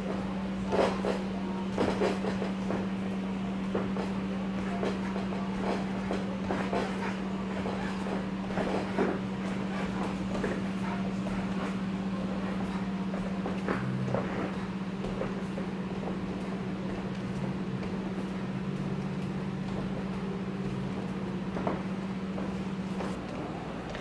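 Shoes stepping and shuffling on the padded canvas of a boxing ring during footwork drills: irregular light thuds and scuffs. Under them runs a steady low hum that stops shortly before the end.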